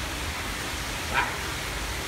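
Steady rushing background noise, with one short rising cry about a second in.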